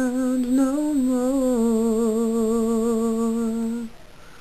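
A woman's unaccompanied singing voice, a slow line with vibrato that steps down to one long held low note and cuts off near the end.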